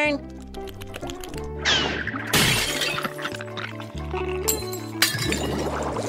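Cartoon slapstick sound effects over light background music: a falling glide, then a long crash with glass shattering, and more clattering with a sharp hit near the end.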